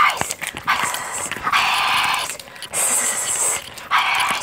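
Close-mic breathy whispering in bursts of about a second each, with no clear pitch.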